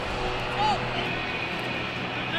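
Open-air stadium ambience during a pre-match warm-up: a steady low rumble with scattered distant voices, and one short shout about half a second in.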